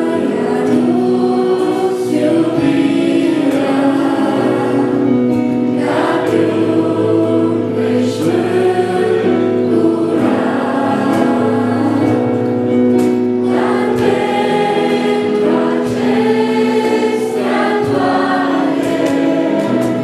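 Two girls singing a Romanian Christian song as a duet into handheld microphones, over sustained accompaniment chords.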